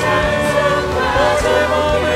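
Live worship band music, sustained keyboard chords over held bass notes, under many voices of a congregation praying aloud together.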